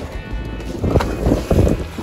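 Background music with wind buffeting the microphone, and loud splashing bursts from about a second in as a person is shoved off a wooden dock into lake water.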